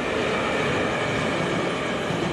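Passenger train passing close by, a steady loud rush of wheels on rail.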